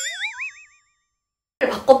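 Cartoon 'boing' sound effect: a springy, wobbling tone that rises in pitch and dies away within about half a second. It is followed by dead silence, and a woman's speech picks up near the end.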